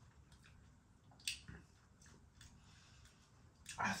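Faint chewing of a crispy-coated chilli cheese nugget, with one short sharp mouth click about a second in.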